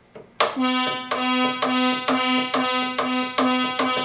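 Oberheim OB-Xa analog synthesizer playing the same bright, buzzy note over and over, about two strikes a second, starting about half a second in. Its voices still sound out of tune after auto-tune, a sign of voice cards that are out of calibration.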